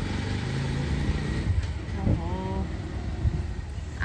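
Low, steady rumble of a motor vehicle's engine running nearby.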